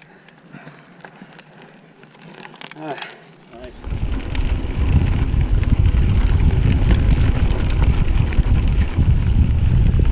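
Wind buffeting the camera microphone of a moving mountain bike, with the rumble of riding over a grassy trail: a loud low roar that starts suddenly about three and a half seconds in, after a quieter stretch with a brief call from a rider.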